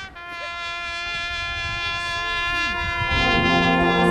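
Marching band brass and winds holding one sustained chord that swells steadily louder, with the low brass coming in strongly about three seconds in.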